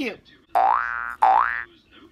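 Electronic sound effect from a toy doctor-kit instrument, played twice in a row: two identical short tones, each holding and then sliding upward in pitch.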